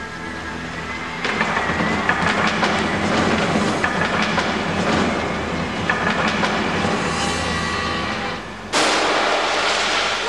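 A rumbling, rattling dramatic sound effect builds for several seconds, then a sudden massive crash near the end: a large china dog ornament smashing to pieces.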